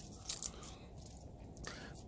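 Leaves being pulled off a pluerry tree's branches by hand: a few faint, crisp snaps and rustles as each leaf stalk breaks away.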